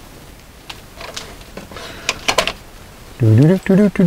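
Light metal clicks and scrapes of a screwdriver tightening the clamp screws of a metal non-metallic-cable connector on 12-gauge cable. There are scattered ticks, with a small cluster about two seconds in. A man's voice speaks briefly near the end.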